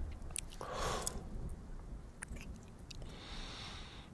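Close-miked kissing sounds: a few wet lip smacks and mouth clicks, with soft breaths between them.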